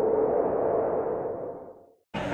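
A muffled, whooshing swell with a steady low tone running through it, fading out near the end: an added intro sound effect.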